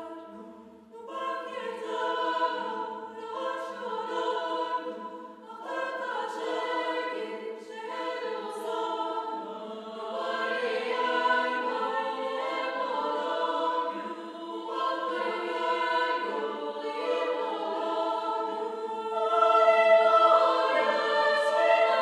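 Women's choir singing in held chords that change every second or two. The singing starts softly, fills out about a second in, and grows loudest near the end.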